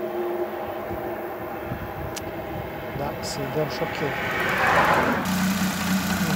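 Daewoo Tico's small three-cylinder petrol engine running at idle, heard with the bonnet open. Its sound swells from about two-thirds of the way in and turns into a stronger, steadier drone near the end.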